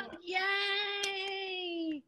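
A woman's voice holding one long sung note, steady for about a second and a half, then dipping slightly in pitch just before it stops.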